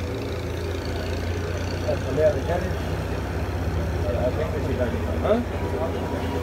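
A steady low mechanical drone with a fast, even pulse, an engine or motor running, with voices talking faintly in the background.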